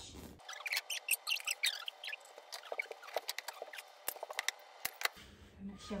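Scissors snipping through upholstery fabric in a run of short, irregular cuts.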